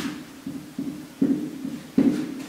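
Marker writing on a whiteboard: a run of short, irregular strokes, with a sharper tap a little over a second in and another at the end.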